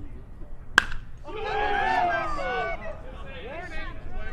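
A single sharp ping of a metal baseball bat striking the ball, ringing briefly, followed by several people shouting over one another for about a second and a half.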